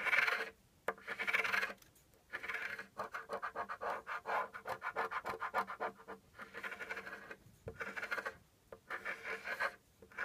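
Scratch-off lottery ticket being scratched, its coating scraped away in quick back-and-forth strokes, coming in several bursts with short pauses between them.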